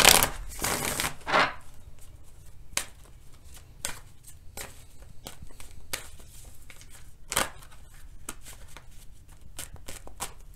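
A deck of tarot cards being shuffled by hand: a loud stretch of riffling in the first second and a half, then scattered light clicks and flicks of cards.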